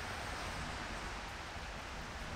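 Steady, even hiss of room tone, with no distinct sounds standing out.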